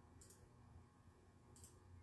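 Near silence, broken by two faint, short clicks about a second and a half apart.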